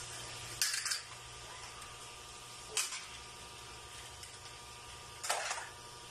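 Plastic toys clattering on a tiled floor as a child handles them: three short clatters, about a second in, near three seconds and past five seconds, over a faint steady hum.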